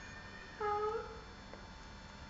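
A single short, high-pitched meow-like call, about half a second long and rising slightly at its end.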